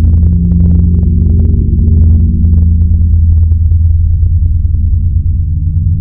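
A loud, deep rumbling gong drone in a dark ambient outro, sustained after a strike just before, with many short crackles over it that thin out after the first half.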